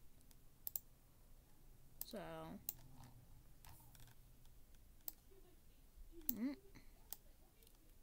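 A handful of isolated sharp clicks from a computer mouse, spread a second or so apart, at low level.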